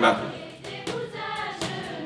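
Music with a choir singing.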